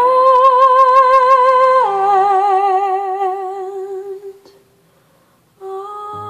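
A female singer holds a long closing note with vibrato, drops to a lower note about two seconds in, and fades out halfway through, over soft accompaniment. After a second of near silence, a sustained instrumental chord comes in near the end.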